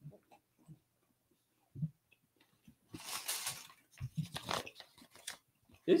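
People chewing chocolate, heard as faint, scattered mouth sounds, with a short hiss-like noise about three seconds in.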